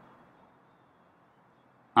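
Near silence: faint steady background hiss, with a man's voice starting right at the end.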